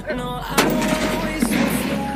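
One loud blast from a sutli bomb firecracker going off against a soda bottle about half a second in, followed by about a second of noisy tail. Background music plays throughout.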